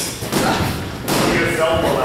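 Dull thuds of boxers sparring in a ring, with men's voices talking over them from about halfway through.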